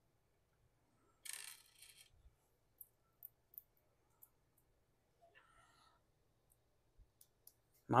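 Faint handling of a .22LR laser bore sight being loaded with its small button-cell batteries: a short rustle, then scattered small clicks as the cells and the metal cap are fitted and screwed together.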